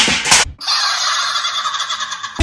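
Rhythmic beats stop about half a second in. A tinny, warbling electronic sound from a dancing cactus toy's small speaker follows, with no bass, for about a second and a half.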